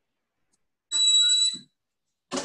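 A single short, high bell-like ding about a second in, one steady tone lasting under a second before it fades.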